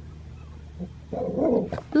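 A dog growls and snarls aggressively at another dog in a short outburst starting about a second in.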